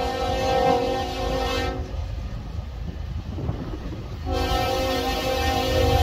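Locomotive air horn on an approaching Norfolk Southern train, sounding a steady multi-note chord: one blast ends about two seconds in and another begins a little after four seconds in, over a low rumble.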